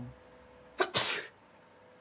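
A man sneezes once, about a second in: a brief catch of breath, then a sharp, noisy burst lasting about a third of a second.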